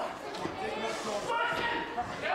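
Indistinct voices echoing in a large hall, with a few light knocks and a short sharper knock near the end.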